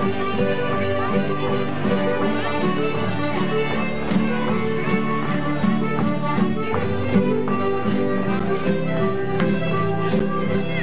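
Traditional Danish folk dance music with fiddle and accordion, playing at a steady dance tempo.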